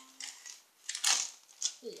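Sheets of coloured card being handled and shuffled on a table, a short papery rustle about a second in followed by a smaller one.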